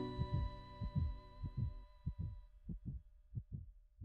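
Heartbeat sound in the soundtrack: low double thumps, lub-dub, repeating about three times every two seconds and fading away. The last held notes of a song die out over the first couple of seconds.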